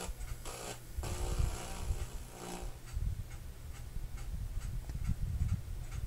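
Noise from a VHS tape starting to play on a TV and VCR, picked up by a handheld camera, before any picture or soundtrack: a steady low rumble with scattered clicks and a faint hum in two short stretches.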